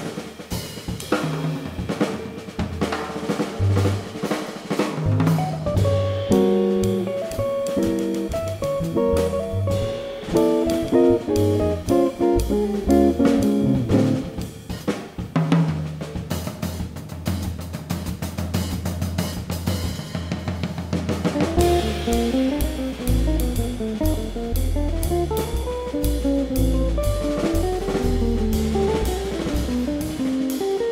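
Jazz trio playing live: electric guitar, upright double bass and drum kit with cymbals and snare. The bass line grows stronger about two-thirds of the way through.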